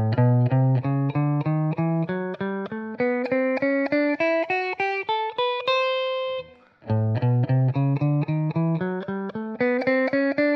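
Clean electric guitar on a Telecaster-style solidbody playing the A double blues scale (the A minor and A major blues scales combined) one picked note at a time. The notes climb steadily, about four a second, from a low A up to a held top note, then the climb starts again from the bottom about seven seconds in.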